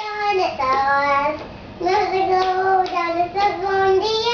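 A young child singing long, drawn-out notes, with a short pause about halfway through.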